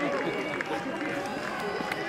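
Several overlapping voices of players and spectators calling and talking across an outdoor football pitch, none of them close by.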